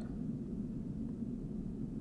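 Steady low room hum with no other sound.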